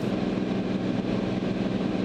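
Cirrus SR22's six-cylinder piston engine and propeller droning steadily in flight, heard inside the cockpit.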